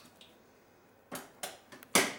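Sharp clicks and knocks of hands handling an open dishwasher's door and rack, a few light ones from about a second in and a louder clack with a short ring near the end.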